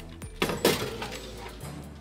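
Metal baking tray of sponge batter set onto the oven rack: a short metallic clatter with ringing about half a second in, over background music.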